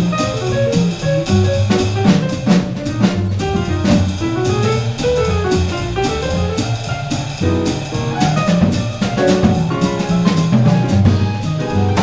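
Live jazz nonet playing a bebop tune: double bass and drum kit with cymbals under a moving melodic line.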